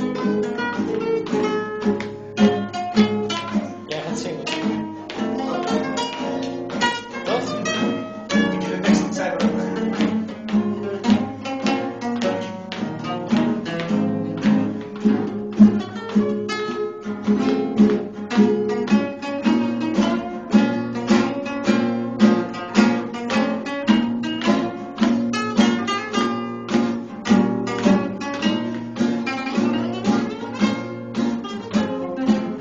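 Acoustic guitar played fingerstyle: a continuous run of plucked notes and chords that settles into a regular rhythmic pulse in the second half.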